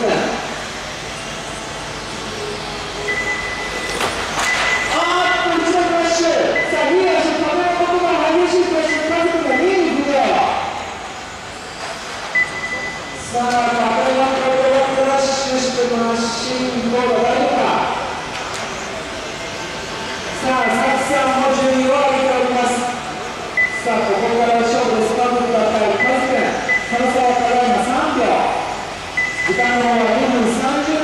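A race announcer's voice over a PA in a large echoing hall, with short high beeps at one steady pitch sounding again and again through it, the kind an RC lap-timing system gives as cars cross the line.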